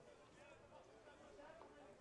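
Near silence at a ballfield, with faint distant voices in the background.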